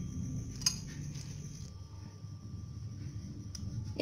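A single light metallic clink from a stainless steel bowl about two-thirds of a second in, with a fainter tick near the end, over a low steady background rumble.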